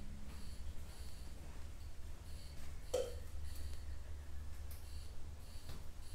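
Quiet room with a steady low hum, faint scattered ticks and one short sound about halfway through. The paint being laid on makes no clear sound of its own.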